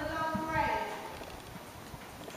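Pony's hooves thudding softly at a walk on a sand arena surface, with a raised voice calling out over the first second.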